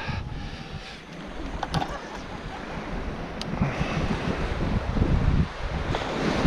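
Surf washing on a sandy beach with wind buffeting the microphone; the wind rumble dips about a second in, then builds and stays strong.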